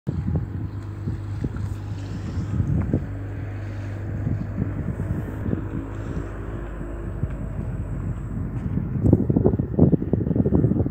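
Inland cargo vessel's diesel engine running with a steady low hum as the ship passes close below, with wind buffeting the microphone, heaviest near the end.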